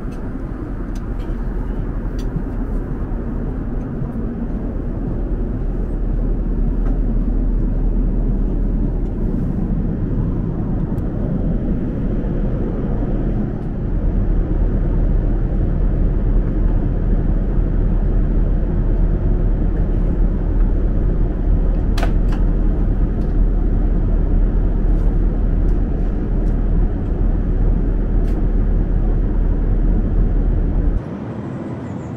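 Steady in-flight cabin noise inside an Airbus A380-800: a continuous low rumble of airflow and engines. It steps up slightly about halfway through, and there is a single sharp click a little after two-thirds of the way in.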